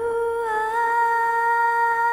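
A woman's voice holding one long final note of a ballad, hummed with closed lips and opening toward the end, with a small dip in pitch about half a second in.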